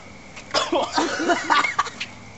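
A man coughing in a run of short bursts, starting about half a second in, sick from chugging milk.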